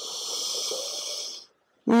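A person's single long breath, heard as a breathy hiss that lasts about a second and a half and then stops.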